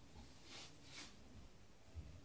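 Near silence, with two faint soft rustles of a cloth garment being folded by hand, about half a second and one second in.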